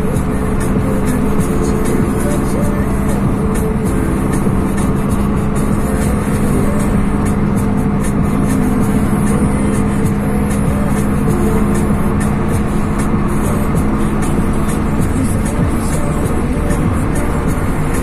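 Steady road and engine noise inside a moving car's cabin, with music playing over it.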